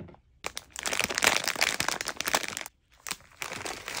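Plastic candy bags crinkling and crackling as they are handled and emptied, starting about half a second in, with a brief pause about two-thirds of the way through before the crinkling resumes.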